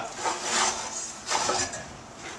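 Lumber and a handsaw being handled: soft scraping and knocking with two brief noisy swells, about half a second and a second and a half in.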